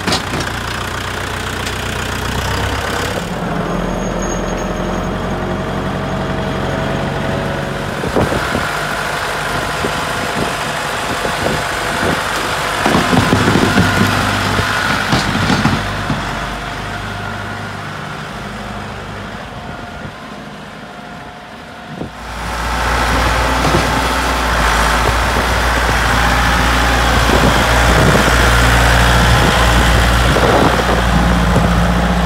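Compact tractor's diesel engine running close by, steady for most of the time. About three-quarters of the way through it abruptly gets much louder, with a heavier low rumble, as it is revved or put under load.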